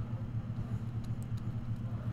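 Steady low background hum, with a few faint short ticks over it.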